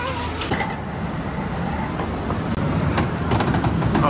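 Busy arcade din: a steady low rumble, with a run of sharp clacks in the second half.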